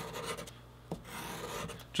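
A leather edge being rubbed on a sheet of sandpaper laid flat on a wooden bench, rounding over a corner. It makes a soft, scratchy rasping in two strokes with a short pause and a small tick between them.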